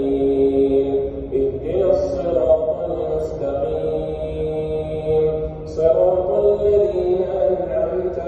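A man's voice in slow, melodic Arabic religious chanting, holding long notes for a second or more and gliding slowly between them.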